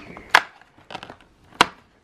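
Cardboard advent calendar door being pushed in and torn open along its perforations: two sharp cracks about a second apart, with fainter clicks between them.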